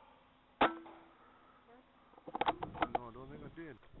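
A single sharp rifle shot with a short ring about half a second in, followed about two seconds later by a quick run of clicks and rattling.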